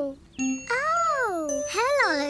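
Children's-show musical jingle: a wordless, voice-like tune that glides up and down in slow arcs over ringing bell tones.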